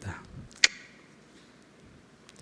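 A brief pause in a man's speech: the end of a spoken word, then a single sharp click about two-thirds of a second in, then faint room tone.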